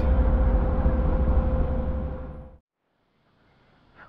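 Suzuki Cappuccino's 657cc turbocharged three-cylinder engine running on the move, heard from the open-topped cabin with heavy wind and road noise, fading out about two and a half seconds in.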